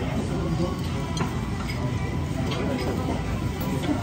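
Busy restaurant din: diners chattering over background music, with a few light clicks such as chopsticks or dishes.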